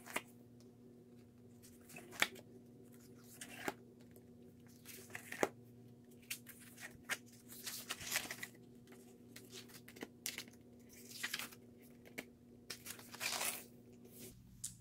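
Paper pages of a disc-bound Happy Planner being flipped one after another: swishing, rustling page turns with sharp snaps as pages flick over, coming in quicker succession about halfway through.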